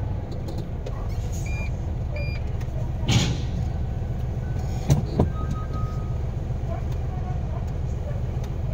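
Truck's diesel engine running steadily at low revs, heard from inside the cab. A short burst of noise comes about three seconds in, and a sharp knock follows near five seconds.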